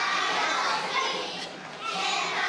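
A group of young children's voices ringing out together in a large hall, a mass of chatter and calling with a short lull about one and a half seconds in.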